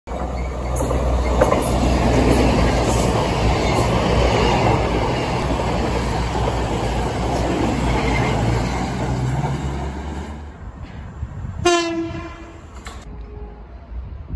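A standing Merchant Navy class steam locomotive with a steady hiss of steam and a low hum. About twelve seconds in, a train sounds one short, loud toot on a single held note.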